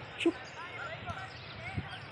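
Outdoor yard ambience of small birds chirping, with a sharp knock about a quarter second in and a dull thump near the end, under faint distant voices.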